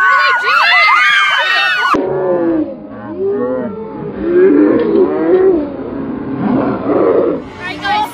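Crowd of teenagers screaming and cheering, many shrill voices at once. About two seconds in, the sound changes abruptly to duller, lower-pitched crowd yelling.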